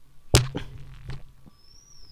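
A single sharp slap as a hand-flattened disc of rice dough is put down onto a metal pot, followed by a couple of faint taps.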